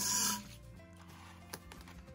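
Oxygen hissing out of a balloon's neck into a glass bottle, stopping about half a second in. After it, faint background music and a single sharp click.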